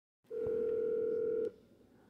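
A steady telephone call tone, held for a little over a second and then cutting off suddenly.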